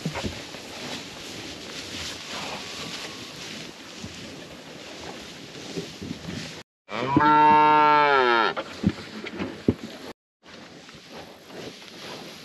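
A single cow moo lasting about a second and a half, its pitch dropping at the end, over a steady outdoor hiss. The sound cuts out completely for a moment just before the moo and again shortly after it.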